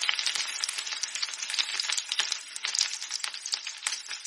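Vegetables sizzling as they are stir-fried in a steel kadai, with a metal spatula scraping and clicking against the pan many times over the steady hiss.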